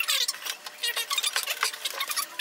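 Wooden workbench being shifted on its sawhorses: a run of light, irregular knocks and scrapes of timber, thin and high with no low end.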